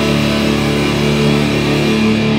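A live metallic hardcore band playing loud, with heavily distorted electric guitars and bass holding long sustained chords over the drums.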